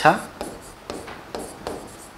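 Chalk writing on a blackboard: a run of short scratchy strokes as a word is written out.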